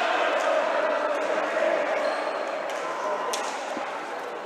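Crowd noise in an indoor roller-hockey arena, a steady hubbub of voices slowly fading. A few sharp clicks of sticks, ball and skates on the wooden rink floor sound through it.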